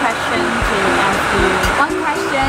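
Steady rushing air of an airliner cabin's ventilation, under background music, while a woman speaks a short question in English.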